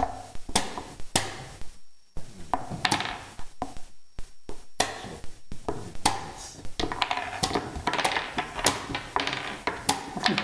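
Chess pieces being set down on a wooden board and chess clock buttons being pressed in a fast blitz game, a string of sharp clicks and knocks at uneven spacing.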